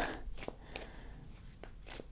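A tarot deck being shuffled overhand by hand: cards sliding against each other, with a few light clicks and taps spread through.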